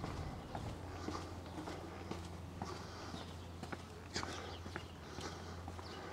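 Footsteps of a person walking on a paved alley path, about two steps a second, over a low steady hum.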